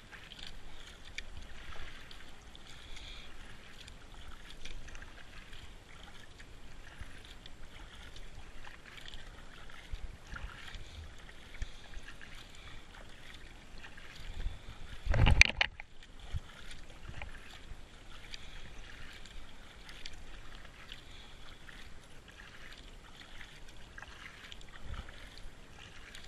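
Kayak paddle strokes dipping and splashing in calm, slow river water, with a single loud knock a little past halfway through.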